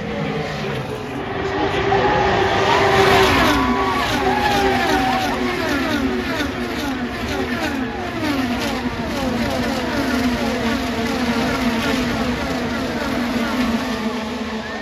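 IndyCar race cars' 2.2-litre twin-turbo V6 engines at racing speed as a string of cars passes one after another. Each engine note falls in pitch as its car goes by, and the sound is loudest about three seconds in.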